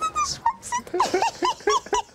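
A woman's high-pitched laughter in short rapid bursts, about four a second, opening with a held high "oh".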